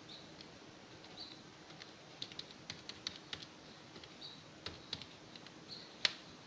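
Faint, irregular clicks of the plastic keys of a Casio fx-82MS scientific calculator being pressed as a new number is typed in, several in quick succession around the middle.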